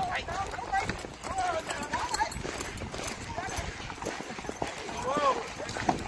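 Horse hooves clip-clopping at a walk, with people talking in the background.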